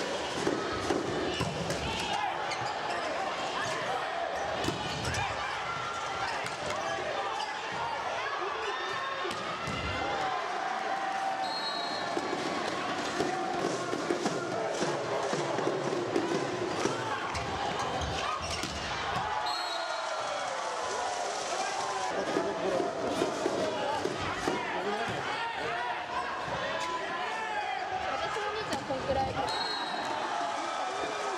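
Indoor volleyball match play: sharp strikes of the ball off hands and the hardwood floor, with spectators' voices and cheering throughout. Short high whistle blasts sound three times, near the middle, later on and near the end.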